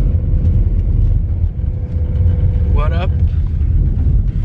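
Car interior noise while driving: a loud, steady low rumble of engine and tyres on the road, heard from inside the cabin. A thin steady tone sits above it for most of the time, and a short vocal sound comes about three seconds in.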